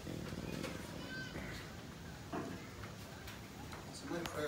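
Faint, indistinct voices, with a brief high-pitched call about a second in.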